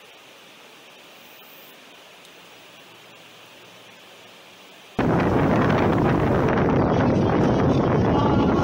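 A faint, steady hiss. About five seconds in, a loud rush of wind buffeting the microphone cuts in suddenly, with the sound of the open sea.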